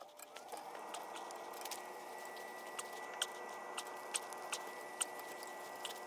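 Flat-blade screwdriver turning the screw on a pipe bonding clamp fastened to black iron gas pipe: faint, irregular small metal clicks and scrapes, over a faint steady hum of several tones.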